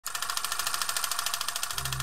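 A fast, even mechanical rattle of about twenty clicks a second, with a low steady note coming in near the end.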